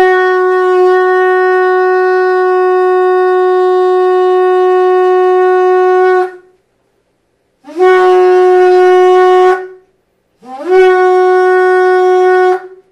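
Shofar (ram's horn) blown: one long steady blast of about six seconds, then two shorter blasts of about two seconds each, the later ones sliding up in pitch as they start.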